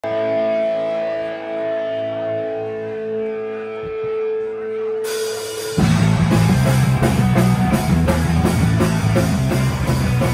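Live punk rock band. An electric guitar chord rings on with steady sustained tones, then cymbals come in around five seconds, and just before six seconds the full band of drums, bass and electric guitars crashes in loud with a steady beat.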